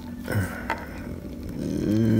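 Fingers handling a plastic action figure, with a light click about two-thirds of a second in as its knee joint is bent to its limit. Near the end a man gives a drawn-out hum.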